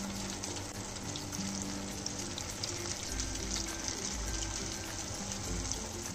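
Strips of idli deep-frying in hot oil: a steady, dense sizzle full of small crackles.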